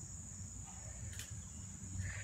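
Crickets trilling steadily as one continuous high-pitched band, over a low rumble, with a faint click a little over a second in.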